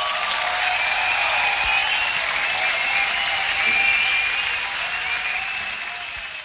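Audience applauding and cheering, a dense steady clapping with wavering cheers over it, beginning to fade toward the end.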